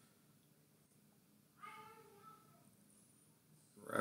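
Quiet room tone, broken about one and a half seconds in by a single short, high-pitched cry lasting about half a second.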